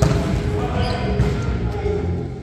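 A volleyball struck hard at the net, one sharp smack at the start, followed by players' voices calling out in a gym.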